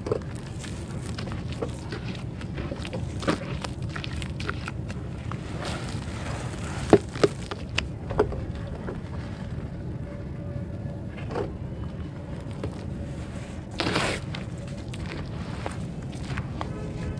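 Fingers crumbling crunchy dirt chunks in a plastic tub: a run of small gritty crackles and clicks, with a few sharp snaps a little past the middle and a louder, wetter burst near the end as wet mud is mashed. A steady low rumble sits underneath.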